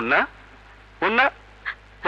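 A person's voice giving two short, strained cries, one at the start and one about a second in, over a steady low hum.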